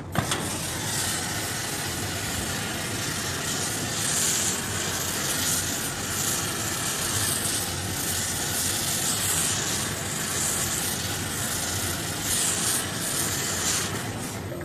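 Steady hissing of a glassworking gas torch flame as a glass horse sculpture is reheated in it. It comes on abruptly at the start and holds steady, with small swells in loudness.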